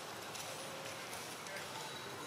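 Light crackling of dry leaves as an infant macaque scrambles over the forest floor, over a steady outdoor background with a murmur of distant voices.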